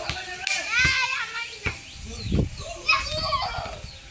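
Children's voices shouting and calling to each other during a football game, with a few short knocks in between.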